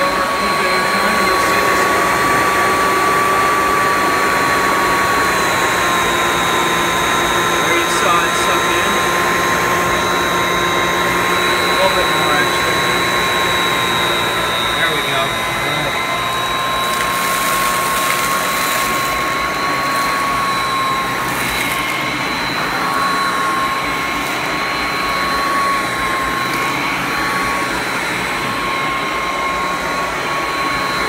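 A 1989 Royal Classic upright vacuum cleaner running on carpet: a loud, steady motor whine that wavers slightly in pitch as it is pushed back and forth. A few brief crackles come near the middle as it draws up crushed chip crumbs.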